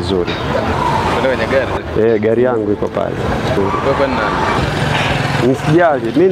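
Roadside traffic noise with a motor vehicle's engine running close by, a steady low hum through the middle, under men talking.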